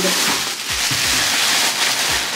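Thin plastic shopping bag rustling and crinkling steadily as it is handled, with a few soft low bumps.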